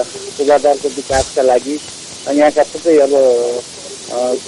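A person speaking over a steady background hiss, with one brief knock about a second in.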